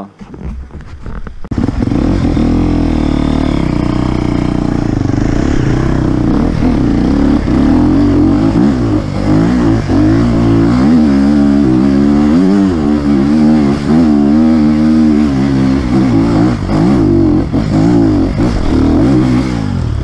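Enduro motorcycle engine running close by, revved up and down continually as the bike is ridden over rough forest trail, rising suddenly to full loudness about a second and a half in.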